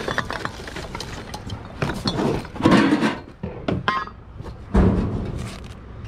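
Objects being handled and shifted in a cardboard box of old glass bottles and tins: rustling cardboard with irregular clicks and knocks, and a heavier thump about five seconds in.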